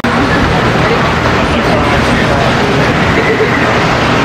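Flying Turns bobsled coaster cars rolling through a wooden trough, a loud, steady rumble as the train passes, with voices over it.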